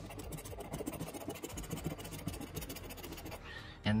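A coin-like scratching token scraping the latex coating off a paper scratch-off lottery ticket in quick, repeated short strokes. The scraping stops about three and a half seconds in.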